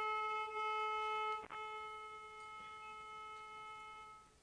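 Solo violin holding one long note, with a brief break about a second and a half in before the note carries on more softly and fades near the end.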